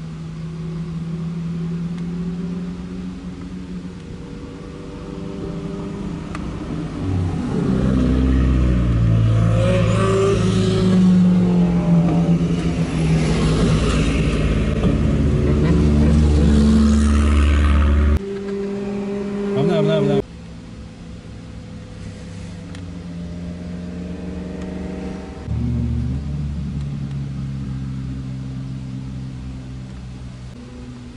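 Car engines passing one after another. A Toyota AE86 Corolla's engine builds up and runs loud and revving for about ten seconds. The sound cuts off abruptly twice, then quieter engine sound carries on.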